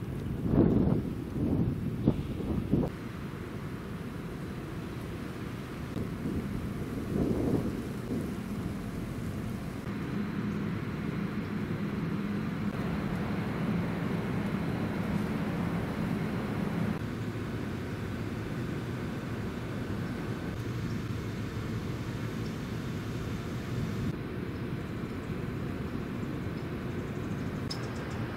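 Outdoor ambience with wind buffeting the microphone: several loud low gusts in the first three seconds and another about seven seconds in, then a steady low rumble that shifts in character a few times.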